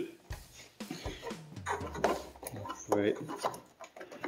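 Light handling noises as hands work among wiring and plastic connectors behind a motorcycle's front fairing: scattered small clicks and rustles, with a brief murmur of voice about three seconds in.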